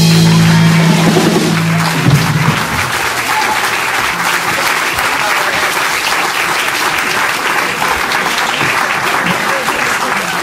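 A live band's final chord ringing out on electric guitars and bass for about two seconds, then steady audience applause through the rest.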